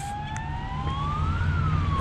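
Ambulance siren wailing, its pitch rising for about a second and a half and then starting to fall, over a low steady rumble of traffic.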